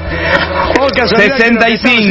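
Men talking.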